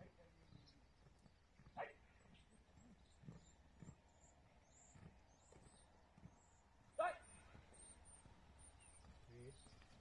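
Quiet field sound broken by two short shouted commands from a sheepdog handler to his pup: a brief one about two seconds in and a louder one about seven seconds in. Faint high bird chirps can be heard behind.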